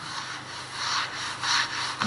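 Whiteboard eraser rubbing back and forth across a whiteboard, wiping off marker drawing in repeated dry scrubbing strokes.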